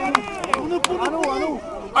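Sideline spectators' voices, with about five sharp knocks in the first second and a half.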